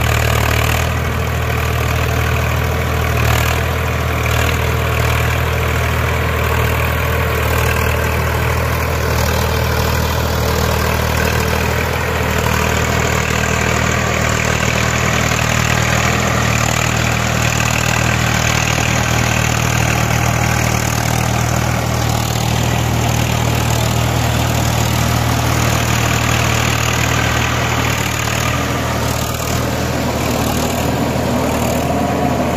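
Swaraj 855 FE tractor's three-cylinder diesel engine running steadily under load in third gear, pulling a working super seeder whose rotor churns the straw and soil of a paddy field.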